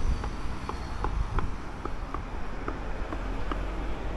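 City street ambience: a steady low rumble with faint light ticks, a few each second.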